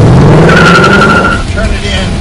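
A car engine revving hard, its pitch rising, with a tyre squeal from about half a second in that lasts nearly a second.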